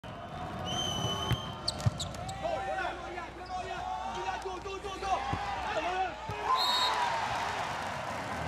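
Indoor volleyball rally: a referee's whistle starts the serve, then sharp smacks of the ball being struck, followed by sneakers squeaking on the court through the rally, over a background of voices in the hall.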